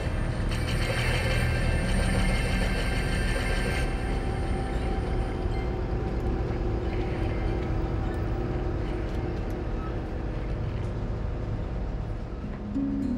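Inside a moving old bus: a steady low engine and road rumble, with a brighter rattling noise from about one to four seconds in.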